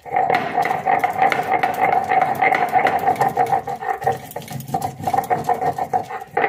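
Stone roller (nora) rubbed rapidly back and forth on a stone grinding slab (sil), grinding boiled raw-banana peel and green chilli into a paste. It makes a loud, continuous grating of stone on stone in fast repeated strokes.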